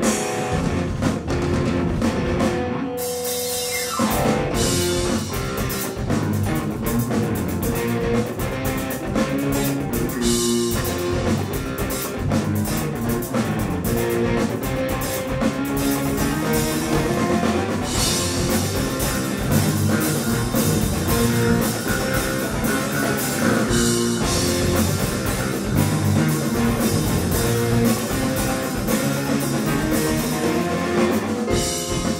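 Live instrumental jam-rock from a four-piece band: electric guitar, electric bass, drum kit and keyboards playing together. About three seconds in the band drops out briefly, leaving a held note ringing, then crashes back in and plays on.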